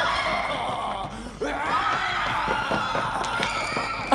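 Several people shouting and screaming over one another, with a short lull a little after a second in.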